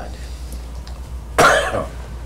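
A man coughs once, sharply, about a second and a half in, over a steady low hum.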